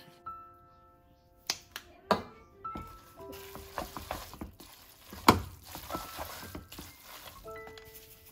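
Glass noodles sizzling and rustling in a hot wok as they are tossed with wooden chopsticks, with a few sharp clicks of the chopsticks against the pan; the loudest click comes a little past halfway. Soft background music plays under it.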